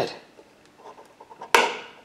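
A single sharp metallic click about one and a half seconds in, as a thin metal tool pries at the pull-ring seal in the spout of a metal hardener can.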